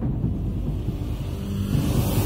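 Low, steady rumble of a news-channel logo intro sound effect, leading into the intro's theme music.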